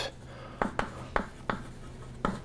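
Chalk writing on a blackboard: a handful of short, sharp taps and scrapes of the chalk as a word is written.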